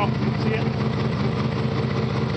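Turbocharged Nissan Titan's V8 idling steadily, heard from beneath the truck near its exhaust pipe.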